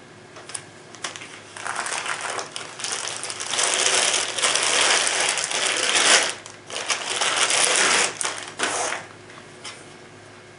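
Clear plastic wrapping rustling and crinkling in several spells as a pistol is drawn out of its bag and handled.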